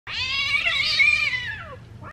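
A cat yowling in a fight: one long call that rises slightly and then falls in pitch near the end before breaking off.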